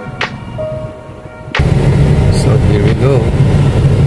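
Background music of held electronic notes with a sharp snap just after the start, cut off abruptly about a second and a half in. Loud, low in-cabin noise of a Toyota car being driven takes over: engine and road rumble.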